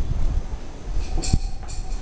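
Low rumbling handling and wind noise on a handheld phone's microphone, with a short cluster of light clicks and a soft thump a little over a second in.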